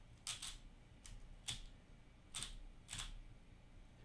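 Plastic Valk 3x3 speedcube being turned by hand: about six faint clicks as its layers snap through a short run of turns.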